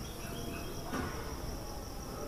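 Faint, steady background with a continuous high-pitched insect trill, like crickets.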